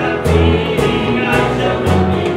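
A church worship team singing a gospel song together, backed by acoustic guitar and a band keeping a steady beat.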